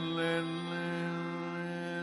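Carnatic classical male voice holding one long, steady note, with a drone sounding behind it.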